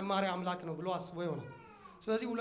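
A man's voice preaching through a microphone, his last word drawn out into a long falling tone near the end.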